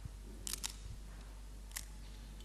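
Camera shutter clicks: a quick pair about half a second in and a single click near the end, over a steady low hum.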